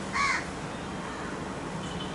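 A single short bird call, like a caw, about a quarter second in, over the steady low hum of the room.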